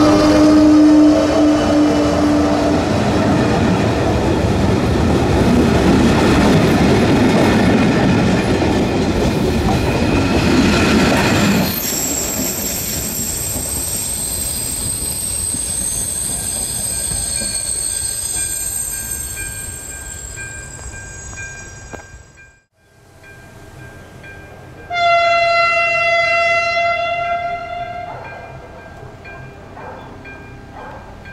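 ČD class 162 electric locomotive and its passenger coaches passing close by. A steady tone and a rising whine come in the first few seconds, then the coaches rumble and clatter past, and thin high tones fade as the train moves away. After a cut, an approaching passenger train sounds its horn in one steady blast of about three seconds.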